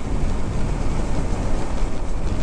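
Wind rushing over the microphone of a motorcycle ridden at speed, with steady engine and road noise underneath.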